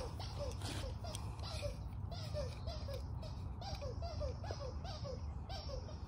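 A distant animal calling over and over, a string of short chirp-like notes about three to four a second, over a low steady background hum, with a few faint ticks of handling.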